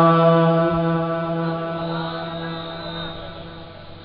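A man's voice chanting Quranic recitation through a microphone, holding one long note on the last syllable of a phrase. The note stays at a steady pitch and slowly fades out toward the end.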